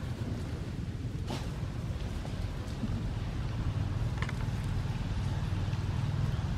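Steady low rumble of wind on the microphone, with two faint short clicks, one just over a second in and one about four seconds in.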